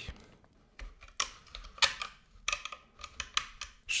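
Hard plastic and metal monitor-stand parts and a screwdriver being handled on a wooden desk, giving about seven irregular light clicks and knocks.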